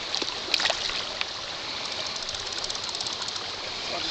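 Shallow stream water running over rocks, a steady rush and trickle, with a few faint clicks and a brief run of rapid fine ticking about two-thirds of the way through.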